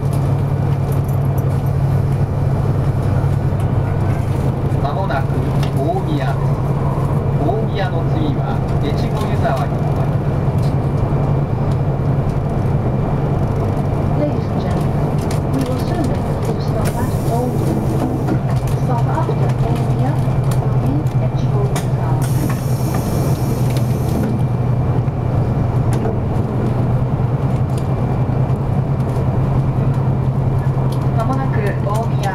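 Steady running noise inside a 200 series Shinkansen passenger car, a low hum and rumble. Faint passenger voices come through it, and there is a brief hiss about two-thirds of the way in.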